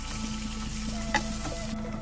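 Sliced ginger sizzling in oil in a frying pan as it is stirred, with one sharp click of the utensil against the pan just past halfway. The sizzle thins out near the end.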